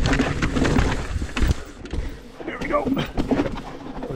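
Commencal Meta HT hardtail mountain bike rolling fast down a rocky, rooty trail: a continuous low rumble of tyres on rock with many sharp knocks and rattles from the frame and drivetrain as it hits rocks and roots.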